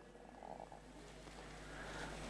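Faint room tone with a low steady hum.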